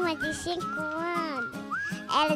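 A young child's voice into a handheld microphone, over background music with a high, whistle-like line.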